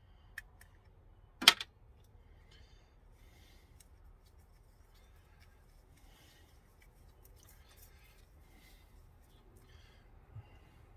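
A single sharp knock about a second and a half in, as a small glass paint bottle is set down on the workbench, then faint, scattered scraping and light clicks of a stirring stick working thinned enamel paint in a mixing cup.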